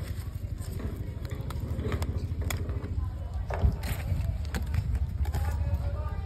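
Strawberry plants being handled: leaves rustling, with scattered clicks and one sharper knock about three and a half seconds in, over a steady low rumble.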